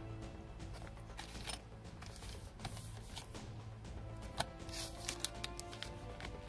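Thin clear plastic coin sleeves crinkling and rustling in the hands, with scattered sharp clicks, over soft background music.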